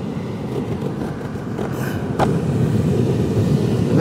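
An old pleated cabin air filter being squeezed and pulled out of its plastic housing, the filter scraping and crackling against the plastic, with a sharp snap about two seconds in. A steady low rumble runs underneath.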